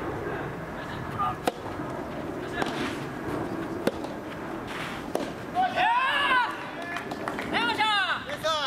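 Rubber soft tennis ball struck back and forth by rackets in a rally: four sharp pops about a second and a quarter apart. Players shout loudly after the point is won.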